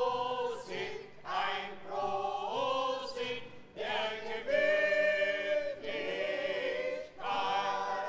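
Mixed choir of men and women singing together in phrases of long held notes, with short breaks between phrases.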